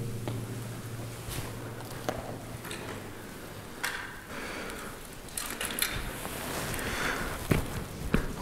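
Slow, scattered footsteps and light knocks as a person steps onto old wooden railway ties over shallow, partly frozen water, testing whether they hold.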